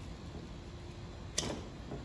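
Faint background with one sharp small click about one and a half seconds in, from the wired bulb socket of a car's old front side marker light being twisted and handled.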